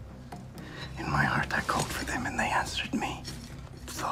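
A man's low, breathy voice, strained and close to a whisper, from about a second in until near the end, over a low steady hum.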